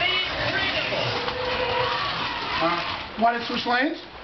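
People talking and calling out, with a louder burst of voices near the end, over a steady background hiss.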